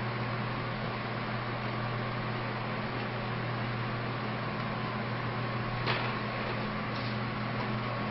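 Steady low hum with an even hiss of room background, and a faint click about six seconds in.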